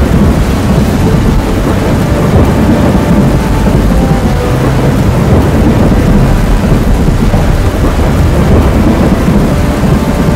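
Loud, continuous deep rumble with a rough noise over it, holding steady without a break.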